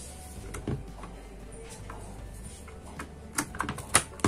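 A DDR4 RAM stick being pressed into a motherboard memory slot: scattered plastic clicks and knocks, one about a second in and a quick cluster near the end that finishes in a sharp click as the module seats and the slot latch snaps shut.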